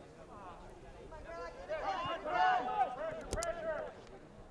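Distant, unintelligible calling voices from across the soccer field, several overlapping, rising about a second in. A single sharp knock about three and a half seconds in.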